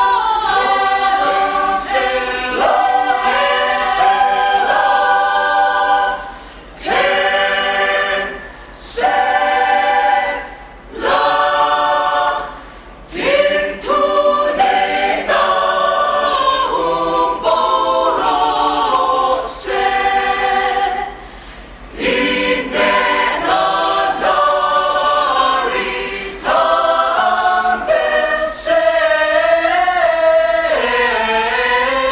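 A mixed choir of women's and men's voices singing a hymn a cappella, in phrases broken by short pauses for breath.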